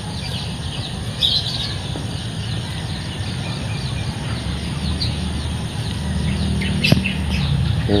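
Birds chirping steadily, a rapid run of short, high, downward-sliding chirps, over a low steady rumble, with one sharp click about seven seconds in.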